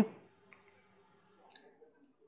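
The tail of a spoken word, then a pause broken by a few faint, short clicks.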